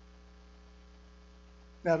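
Steady low electrical mains hum with no other sound, until a man's voice starts just before the end.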